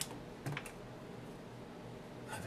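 Sculpting tools clicking as they are picked up from the work table: one sharp click at the start, then two more close together about half a second in.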